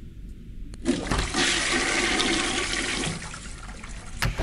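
A click, then a rush of water that starts about a second in and dies away after about two seconds.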